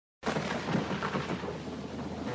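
Recorded thunderstorm, rain with rumbling thunder, starting suddenly a moment in, as the opening of a metal album's intro track.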